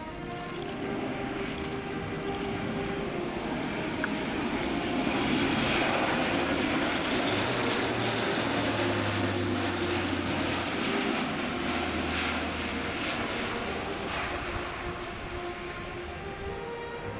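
Airbus A400M Atlas's four TP400 turboprop engines and eight-bladed propellers droning in a pass overhead. The sound swells to its loudest about six seconds in, then slowly fades as the aircraft banks away, a low propeller hum showing in the fading part.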